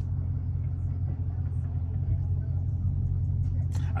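Dodge Scat Pack's V8 running steadily at low revs, a constant low hum heard from inside the cabin.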